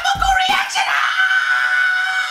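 A man's long, drawn-out yell ("Awwhhhh") held on one steady pitch, over background music whose beat drops out about half a second in.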